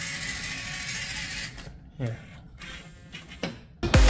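Small electric RC truck's motor and gearbox whirring faintly for about a second and a half, then a short spoken "yeah", and electronic dance music cuts in loudly near the end.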